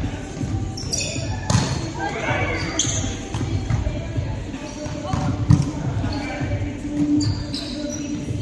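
Volleyball rally in a reverberant gym: several sharp hits of hands on the ball, short high squeaks of sneakers on the wooden floor, and players' voices calling out.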